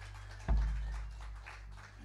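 The last held chord of a worship band dies away, then a single heavy, deep thump through the sound system about half a second in rings out for about a second, followed by a few small knocks.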